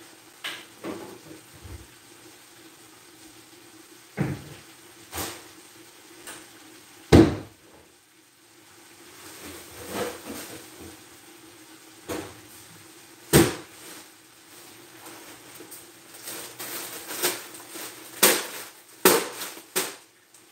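Scattered kitchen knocks and door clunks, about half a dozen spread out, the loudest about seven seconds in, over a faint steady hum.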